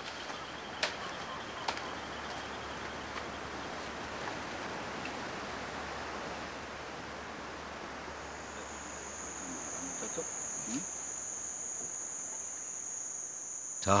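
Crickets trilling steadily in one high continuous tone that sets in about halfway through, over a soft, even outdoor hiss. Two brief clicks sound early on.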